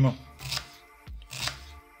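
Kitchen knife slicing an onion on a wooden cutting board: three short knife strikes on the board.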